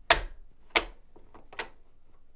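Bolt of a sporterized Arisaka Type 30 carbine being worked: three sharp metal clicks, the first the loudest. A barely-seated .257 Roberts round is being chambered so that the rifling pushes the bullet back into the case.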